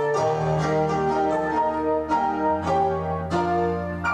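Background piano music: a slow melody of separate, ringing notes over held low notes.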